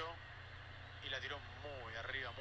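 Faint match commentary: a commentator's voice speaking quietly over a steady low hum.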